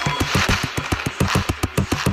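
Dark, percussion-driven electronic music from a dubstep DJ mix. Fast, even low percussive pulses run throughout, with a hissy swell rising about a quarter of the way in.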